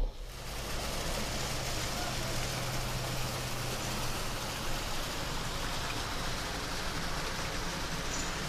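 Steady rush and splash of water from a backyard pool's wall spillways and jets pouring into the pool, with a low steady hum under it for the first half or so.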